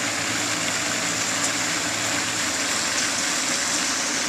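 Steady hiss of falling water, even and unbroken, with a faint high steady tone above it.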